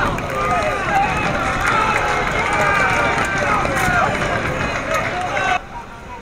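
Several voices shouting over one another on a football pitch, players and spectators calling out at once; the sound cuts off abruptly near the end.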